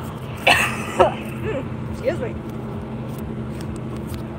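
Semi truck's diesel engine droning steadily, heard from inside the cab. A throat-clearing comes about half a second in.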